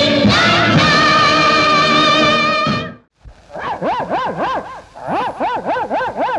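Bollywood film song music: the closing held chord of one song, with sustained wavering voices, ends about three seconds in. After a brief silence the next song starts with quick repeated up-and-down phrases.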